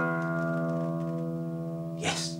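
An acoustic guitar chord ringing out and slowly fading after a single strum.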